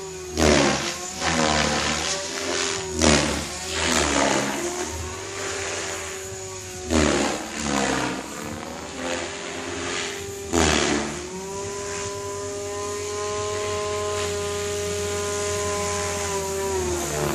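Goblin 500 electric RC helicopter flying 3D: the steady whine of its Compass Atom 500 motor and gear drive, broken by about seven loud, brief rushing swishes of the rotor blades in the first eleven seconds. After that the whine holds steady and slowly grows louder.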